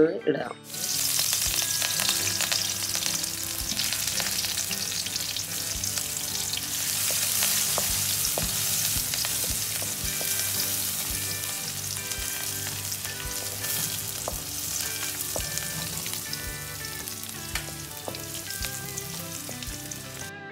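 Chopped onion and green chillies hit hot oil in an aluminium kadai and sizzle, starting suddenly under a second in and easing slowly. A wooden spatula stirring them gives short taps and scrapes against the pan.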